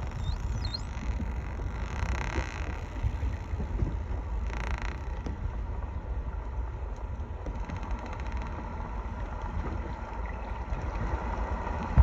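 Steady low rumble and wash of a boat on open water, with two short surges of hiss in the first five seconds.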